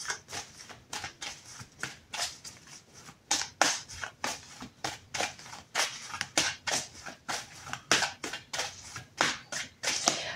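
Tarot cards being shuffled by hand: a run of short, irregular card clicks and slaps, a few a second.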